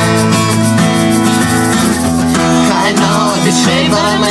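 Acoustic guitar strummed in a steady rhythm, with a hand shaker keeping time; voices start singing near the end.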